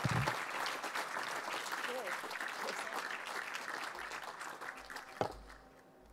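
Audience applauding, the clapping thinning and fading away over several seconds. A single sharp knock comes near the end.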